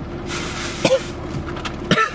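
A man coughing to clear a dry throat: a breathy rasp, then two short coughs about a second apart, over a steady low hum.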